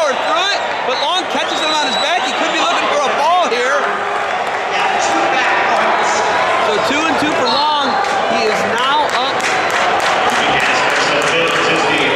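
Spectators and coaches shouting and yelling, many voices overlapping, with scattered sharp claps or knocks, more of them in the second half.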